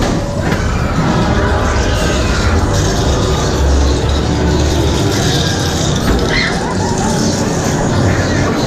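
Loud, dense haunted-maze soundtrack music and effects playing through speakers, with a deep low rumble swelling about three and a half seconds in.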